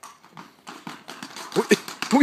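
Horse's hooves clip-clopping on stone paving in a run of quick strikes as it trots in a circle on a lead rope, with a brief vocal sound near the end.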